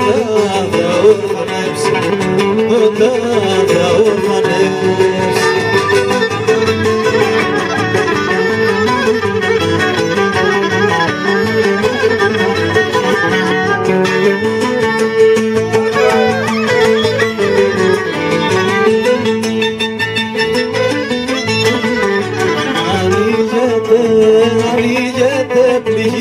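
Cretan folk ensemble playing an instrumental passage: a violin carries the melody over two laouta and a guitar, strummed as bass, keeping a steady rhythmic accompaniment.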